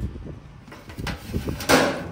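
A metal baking sheet being slid out of an outdoor grill, with a few light knocks and a short, loud scraping rush near the end as the tray comes out.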